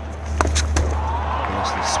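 Cricket bat striking the ball with a sharp crack about half a second in, followed by stadium crowd noise swelling.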